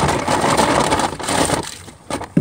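Cardboard packaging rustling and crinkling as it is handled, for about a second and a half before fading out.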